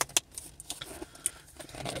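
Packaging of a boxed earphone set being handled: a handful of sharp clicks and light crackles, the loudest right at the start.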